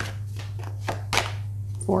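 Tarot cards being shuffled and a card drawn from the deck: a run of quick, crisp papery flicks and slides over a steady low hum.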